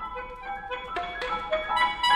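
Soprano saxophone and grand piano playing together in a quieter passage of short, separate notes, several a second.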